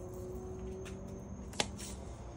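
Kosher salt pouring from a canister's spout into a palm, a faint rustling trickle, with one sharp click about one and a half seconds in.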